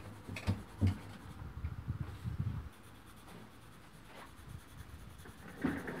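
Pen writing on paper, a soft scratching with a few light knocks in the first few seconds.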